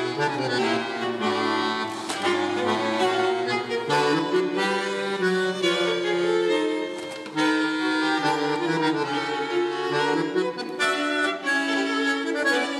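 Bandoneon playing a melodic line with a string orchestra of violins, cellos and double basses, the squeezebox sound leading over the strings.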